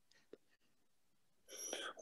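Near silence on a video call, with one faint click about a third of a second in and a short, soft, breathy voice sound near the end as a man begins to reply.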